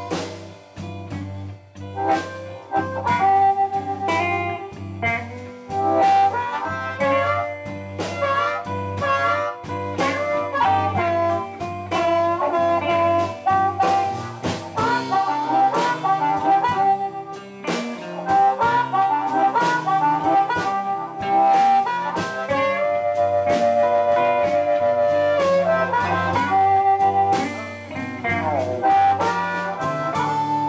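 Live blues band: an amplified harmonica plays the lead with bending and long held notes, over two electric guitars and a drum kit keeping a steady beat.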